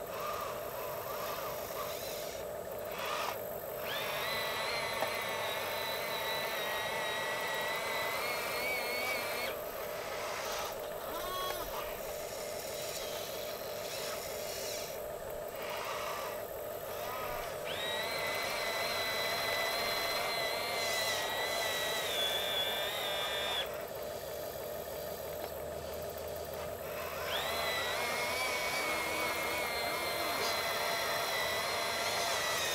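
Small electric drive motors and gearboxes of RC construction models whining as an RC wheel loader pushes an RC dump truck through soft dirt. The whine comes in three long spells of about five seconds, each rising quickly in pitch as it starts. A steady lower hum runs underneath.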